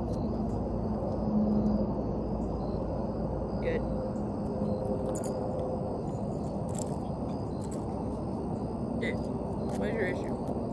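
Low, indistinct talking over a steady outdoor background rumble, with a few brief high chirps and faint clicks.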